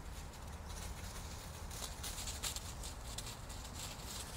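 Dogs running through a carpet of dry fallen leaves: an irregular patter of leaf crunching and rustling under their paws.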